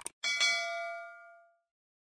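Subscribe-button sound effect: a quick double click, then a notification-bell ding, struck twice in quick succession, with several ringing tones that fade out over about a second.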